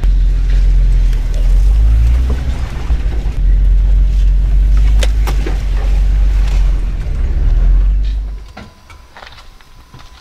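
Jeep's engine and drivetrain rumbling low as it crawls along a rough trail, heard from inside the open-sided cabin, with a few sharp knocks along the way. The rumble drops away about eight seconds in.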